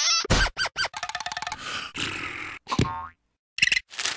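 Cartoon sound effects in quick succession: a short wobbling spring-like tone at the start, sharp hits, a rapid run of clicks about a second in, a noisy swish, and a brief pitched effect near three seconds.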